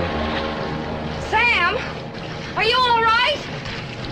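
A man struggling in the water crying out twice in strained, wavering shouts without words, over the wash of the water. Music trails off at the start.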